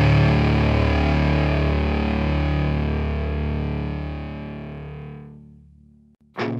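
Industrial groove metal recording: a distorted electric guitar chord held and left to ring, fading steadily over about five seconds until it is nearly gone.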